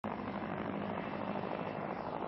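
A steady, even rumbling drone with a low hum beneath it.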